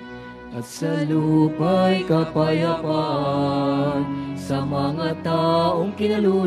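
Sung liturgical chant at Mass: a singing voice with vibrato comes in about a second in over sustained keyboard chords, after a short, quieter instrumental stretch.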